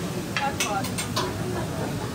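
Indistinct voices in short snatches over a steady low background hum.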